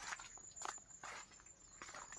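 Faint footsteps with rustling against plants: four soft, irregular scuffs.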